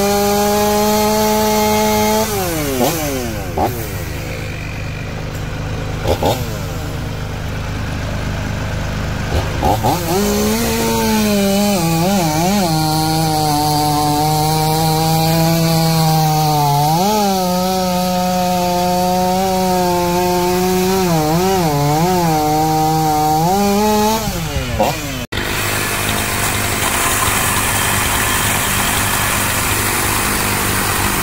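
Two-stroke gas chainsaw cutting through a log at full throttle; its pitch drops about two seconds in. After a stretch without the steady engine note, it cuts again for about fourteen seconds, its pitch dipping and recovering as it bogs in the wood. Near the end the sound changes abruptly to a cordless electric chainsaw cutting, a steadier motor hum with chain noise.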